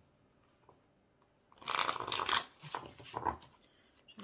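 A deck of tarot cards shuffled by hand: quiet at first, then a dense flurry of card-on-card rustling about a second and a half in, followed by two shorter bursts.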